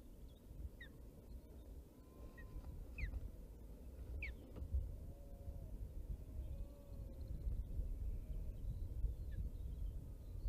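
Wind rumbling on an outdoor nest microphone, growing stronger in the second half, with a few short, high, falling bird chirps, the clearest about four seconds in.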